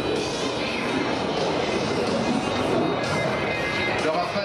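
Music playing over loudspeakers, mixed with the steady noise of a Dassault Rafale's twin Snecma M88 jet engines as it flies a display.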